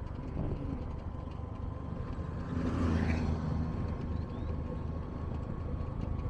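Engine and road noise of a car driving along a paved road, a steady low rumble that swells briefly about halfway through.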